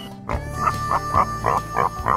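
Outro music sting with a quick run of short laugh-like cries, about three a second, starting just after the beginning.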